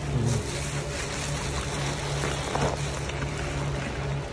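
A soap-soaked sponge squeezed in thick pink Pine-Sol lather, with a few soft wet squelches, over a steady low hum.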